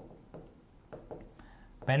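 Dry-erase marker writing on a whiteboard: a quick series of short, quiet strokes as a word is written.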